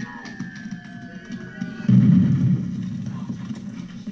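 War-drama soundtrack playing back: a long high whistle falling slowly in pitch, then a heavy low blast about two seconds in, the loudest sound, as an incoming shell lands and explodes.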